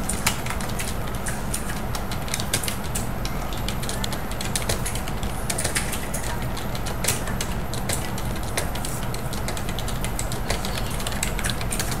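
Crayon scratching on paper in short, irregular strokes, over a steady low hum.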